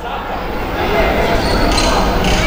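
Crowd noise in an indoor basketball arena, growing louder, with a basketball bouncing on the hardwood court.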